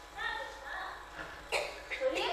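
Faint speaking voices, then a sudden cough about one and a half seconds in, with a shorter sound just after it.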